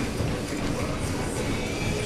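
Steady low rumbling background noise in a gym, with a single sharp click right at the start.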